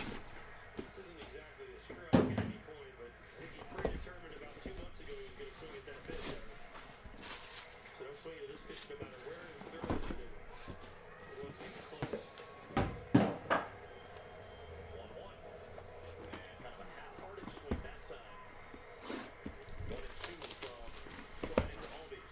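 A cardboard shipping case and shrink-wrapped card boxes being handled on a tabletop: scattered knocks and thuds as the boxes are pulled out and set down, the loudest about 2 seconds in and a pair about 13 seconds in.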